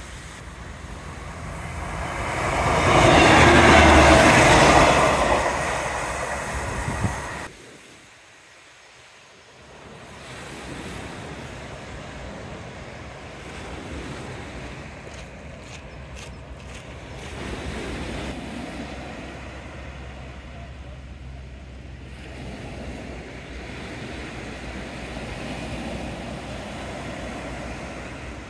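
CrossCountry Voyager diesel train passing close by on the seawall line. Its noise swells to a peak about four seconds in and then cuts off suddenly. After that, gentle surf washes on the shore.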